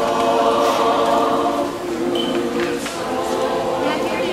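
A mixed choir of men's and women's voices singing together in harmony, holding long chords.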